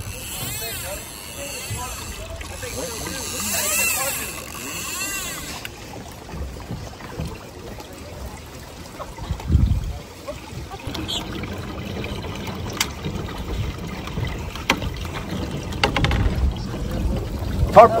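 Indistinct voices of people talking, over a steady low rush of wind and sea, with a single low thump about halfway through.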